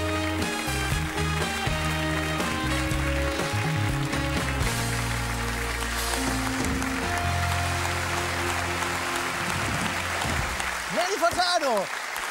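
Studio house band playing a short upbeat play-off with bass and held chords over audience applause. The music stops about ten and a half seconds in, and a man starts speaking just before the end.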